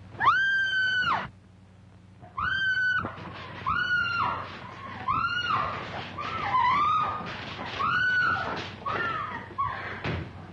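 A woman screaming in terror: one long high scream, then after a short pause a string of shorter screams, about one a second.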